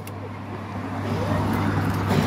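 Road traffic noise from passing cars, growing louder in the second half, over a steady low hum.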